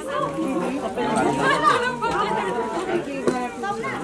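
Several people talking at once in overlapping chatter, with a thin high held tone in the background for a couple of seconds in the middle.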